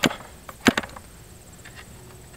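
Two sharp clicks, one right at the start and one under a second later, as the propeller of a stopped Super Tigre G40 model glow engine is turned over by hand. The owner is feeling its bearings, which he suspects need replacing.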